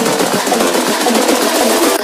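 Electronic dance track building up, with dense, fast drum hits and the deep bass taken out.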